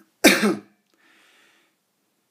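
A man clears his throat with one short, loud cough about a quarter of a second in, followed by a faint breath.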